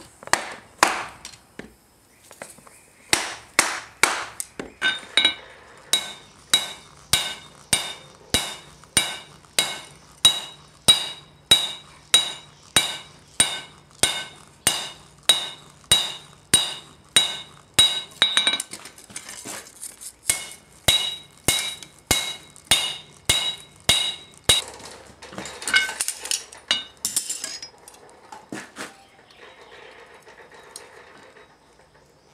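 Hand hammer forging a red-hot steel blade on an anvil: steady blows about two a second, each ringing, stopping about 25 s in. A few lighter clinks of metal follow.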